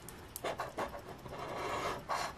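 Coin-style scratcher scraping the coating off a paper scratch-off lottery ticket in a quick series of short strokes.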